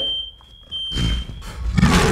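A smoke alarm sounding one steady high-pitched tone that stops under a second in. Near the end a tiger-roar sound effect comes in loudly.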